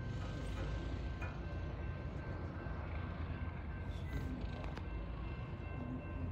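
Railroad grade-crossing bell ringing steadily, signalling an approaching train, over a low steady rumble.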